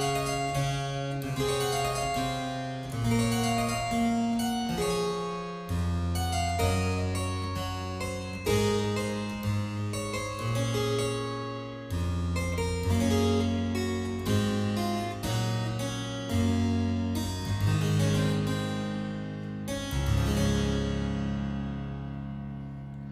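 Harpsichord playing a slow instrumental passage, chords changing about once a second over a low bass line.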